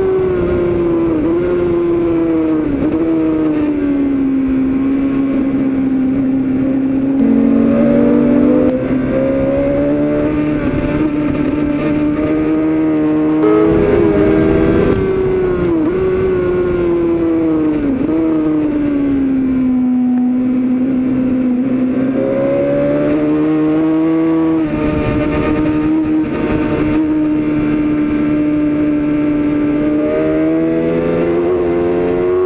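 Honda CBR 600 F inline-four engine heard from on board at racing revs, its pitch falling and climbing again and again as it runs through the gears and corners, with quick dips and rises at the gear changes.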